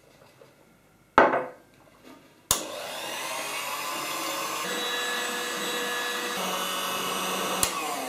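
A single sharp knock, then a Zelmer electric hand mixer switched on with a click about two and a half seconds in and running steadily with a whine, its wire beaters whipping egg whites toward a stiff foam in a plastic bowl. Another click comes near the end.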